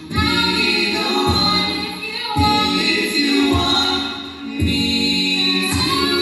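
A coed a cappella group singing into microphones: men's and women's voices holding close-harmony chords over a sung bass line, swelling and easing off phrase by phrase.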